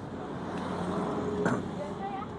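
Low steady hum of a motor vehicle's engine in the background, swelling a little then easing, with faint distant voices and one light click.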